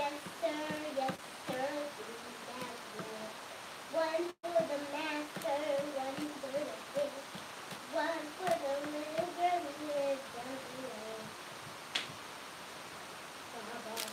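A woman singing a tune softly to herself, in long held notes that glide from pitch to pitch. A single sharp click sounds near the end, and the sound cuts out for an instant about four seconds in.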